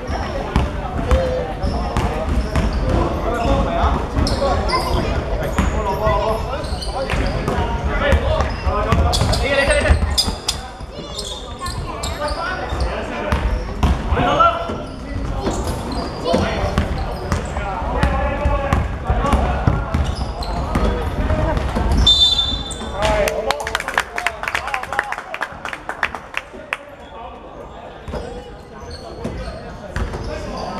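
A basketball bouncing on a hardwood court and the voices of players in a large, echoing sports hall, with a brief high-pitched tone about two-thirds of the way through followed by a run of quick knocks.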